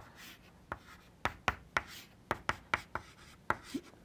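Chalk writing on a blackboard: about a dozen sharp, irregular taps as the chalk strikes the board, with short scratchy scrapes between them as strokes are drawn.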